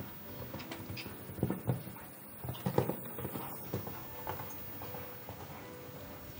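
Hoofbeats of a show jumper cantering on arena footing: a run of dull, uneven thuds, loudest a little past one second in and again near three seconds in.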